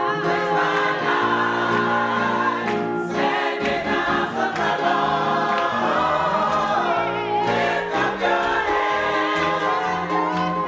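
Church choir singing a gospel song with instrumental accompaniment, the many voices holding long notes over a steady bass line.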